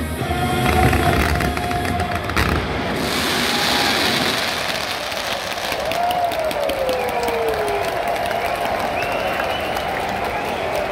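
Show music with a heavy beat that stops about two and a half seconds in. It gives way to a stadium crowd cheering and applauding, with crackling pops from fireworks.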